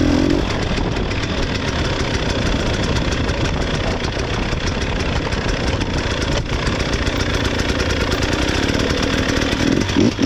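Two-stroke 300 cc enduro motorcycle engine running at a steady, moderate throttle while being ridden, its note holding even with no big revs.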